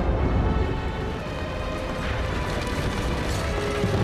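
Many horses galloping together: a dense, continuous clatter of hooves, with music underneath.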